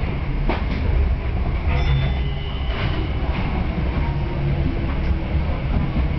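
Yurakucho line subway train running slowly alongside an underground platform as it comes in to stop: a steady low rumble of motors and wheels, with a few clicks and brief high-pitched squeals from the brakes or wheels a couple of seconds in.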